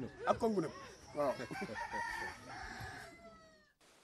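A rooster crowing once: a long held call that slides down in pitch at its end and stops about three and a half seconds in. Voices are heard briefly before it.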